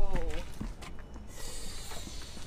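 A brief wordless vocal sound at the very start, followed by a steady low rumble and a soft hiss that comes in just before the end.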